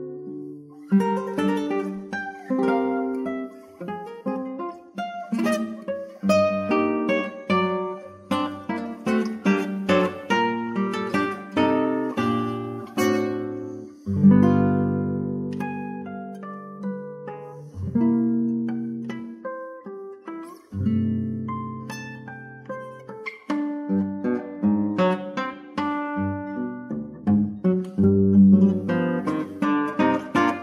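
Background music: a solo acoustic guitar playing a slow piece of single plucked notes and chords that ring and fade, with a few longer held chords near the middle.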